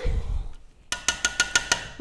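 A spatula stirring thick salsa in a stainless steel stockpot: a low scraping rumble at first, then about a second in a quick run of light clinks against the pot, roughly eight in under a second, with a faint ring from the metal.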